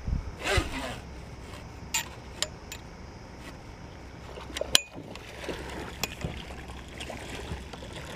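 Landing net being worked over the side of a boat to land a catfish: a few sharp clicks and knocks of the net frame and handle, over a steady low rumble. A short falling shout comes about half a second in.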